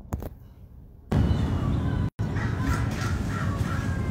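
A bird gives a quick series of about five short, harsh calls near the end, over a loud steady rushing noise that begins abruptly about a second in and cuts out for a moment in the middle.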